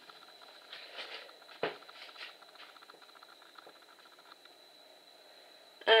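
Fingertip poking and tapping the stiff paper face of a fusuma sliding door: a few faint soft taps and scuffs, with one sharper knock about a second and a half in. The fusuma paper holds without tearing, unlike shoji paper.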